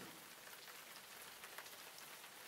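Near silence: a faint, even hiss.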